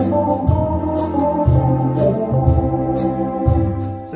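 Orla GT8000 Compact electronic organ playing held chords over its automatic rhythm accompaniment, with a steady drum beat and bass notes changing about once a second. The music stops near the end.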